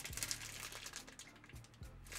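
Faint crinkling of a plastic bag holding a rope ratchet hanger and metal clips as it is turned over in the hand, with a few soft clicks over a low steady hum.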